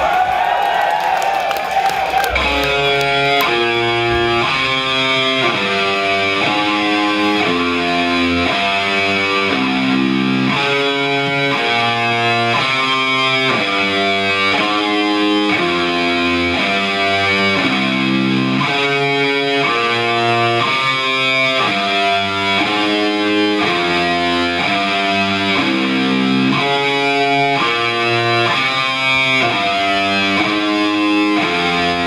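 Live heavy metal band at full volume. There is a crash and a gliding, wailing guitar tone in the first two seconds. Then a heavily distorted electric guitar plays a slow riff of chords that change roughly once a second.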